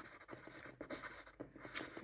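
A ballpoint pen writing on paper: faint, irregular scratching with a few small ticks, one sharper tick near the end.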